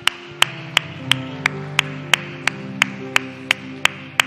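Hand clapping in a steady, even beat, about three claps a second, over soft sustained instrumental chords.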